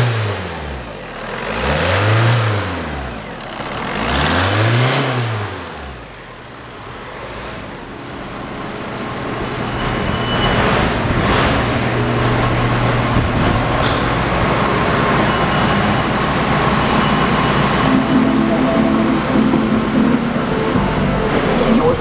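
A 2004 VW Jetta's 1.9-litre four-cylinder turbodiesel revved in two quick blips, each rising and falling in pitch, then settling to a steady idle. The idle is louder from about ten seconds in, heard at the rear of the car.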